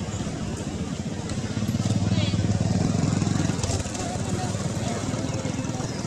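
A motor vehicle's engine rumbling as it passes, loudest from about two seconds in until nearly four seconds, with a brief chirp in the middle.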